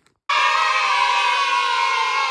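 Edited-in transition sound effect: after a brief silence, a loud held chord of many tones that slowly slides down in pitch.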